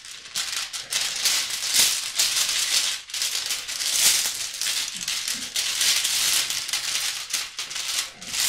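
Small stones being shaken together to draw a grounding stone: a continuous rattling clatter with a few brief dips.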